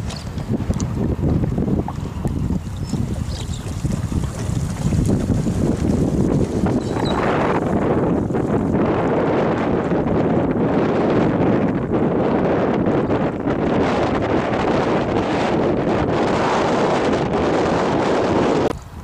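Gusty wind buffeting the microphone: a steady rumbling noise that grows louder and hissier about seven seconds in.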